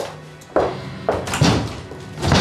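Four sharp wooden knocks and thuds about half a second apart, from a door being handled and footsteps on a hard floor, over soft background music.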